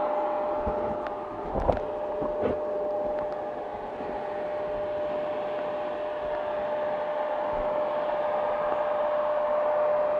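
KTM 690 Enduro's single-cylinder engine idling steadily, with a constant whine over its running sound. A couple of short knocks about two seconds in, the first the loudest.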